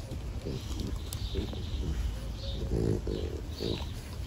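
French bulldog breathing noisily through its short snout while holding a toy in its mouth, a string of short rough puffs, about two a second.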